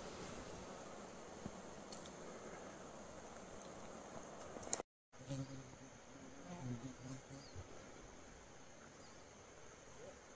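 Faint buzzing of a flying insect over quiet outdoor background hiss, the buzz wavering most plainly from about five to eight seconds in. The sound drops out completely for a moment about five seconds in.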